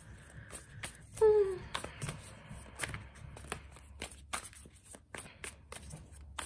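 A Light Seer's Tarot deck being shuffled by hand, cards slipping and clicking against one another in a quick, uneven run of soft ticks. A short falling hum of a voice comes about a second in.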